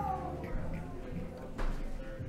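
A fiddle note sliding down in pitch, like a string being tuned or slid between songs, with a steady low instrument tone under it. A short bump sounds near the end.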